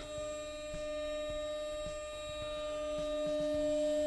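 Two-post car lift's electric hydraulic pump running as it raises a pickup truck: a steady whining hum that grows slightly louder, with a few faint clicks.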